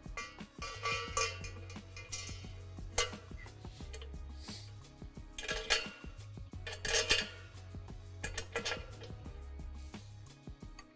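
Metal assembly hardware clinking and clattering: steel bolts and washers being set into the holes of a steel basketball pole and a metal pole bracket fitted onto it, with a handful of sharp clinks. Background music with a steady bass runs underneath.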